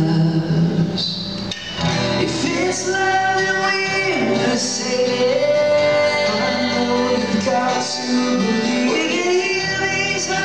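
A man singing a melody live, accompanied by two acoustic guitars.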